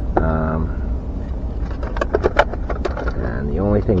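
Quick run of sharp clicks and light knocks from a plastic RC buggy body shell being handled and pressed down onto its chassis, about two to three and a half seconds in, between bits of speech.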